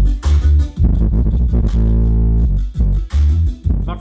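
Bass-heavy music playing through a shop sound system with a JL Audio 10W3 10-inch subwoofer built into a cabinet. Strong, pulsing deep bass notes carry the track.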